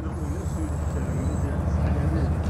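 A low, steady rumble that slowly grows louder, with faint voices in the background.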